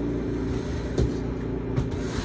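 Background music with a low, steady bass line, and a single click about a second in.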